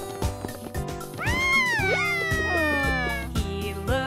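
Cartoon background music with a bass line, and a long high wail from a child character starting about a second in, rising and then falling slowly in pitch for about two seconds.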